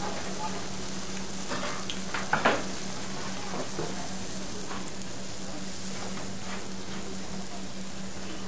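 Youtiao dough sticks deep-frying in a large wok of hot oil: a steady, even sizzle, with a couple of brief knocks about two and a half seconds in.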